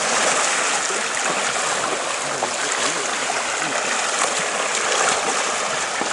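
Seawater rushing and streaming steadily over a whale's back as it surfaces alongside the boat.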